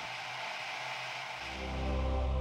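Intro jingle music: a sustained shimmering, hissy synth sound holding several steady tones, with a deep bass note coming in about one and a half seconds in.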